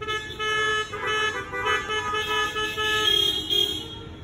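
Several car horns honking at once at different pitches, in short repeated toots, as applause from a parked audience.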